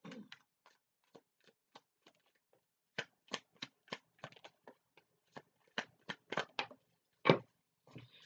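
A deck of tarot cards being shuffled by hand: a run of short, dry clicks and slaps, sparse and faint at first, then quicker and louder from about three seconds in, with one louder slap near the end.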